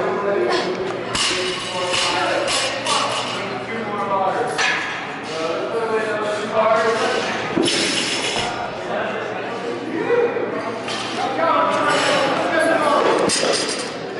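Several voices talking and calling out in a large, echoing gym, with a few knocks and clinks of gym equipment among them.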